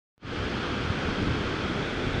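Steady rushing of Shoshone Falls, a large waterfall, heard from above, with wind buffeting the microphone. It starts just after a moment of silence at the very beginning.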